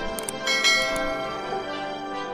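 Subscribe-animation sound effects: a couple of mouse clicks, then a bright notification-bell chime about half a second in that rings on and fades, over background music.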